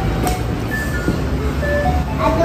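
A simple electronic jingle, one note at a time, playing over a steady low rumble.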